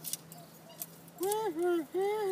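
A man's voice: a long, drawn-out utterance starting a bit after a second in and running on to the end, preceded by a few faint, short clicks.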